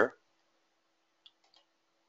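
A few faint computer-mouse clicks a little over a second in, over near silence with a faint steady hum.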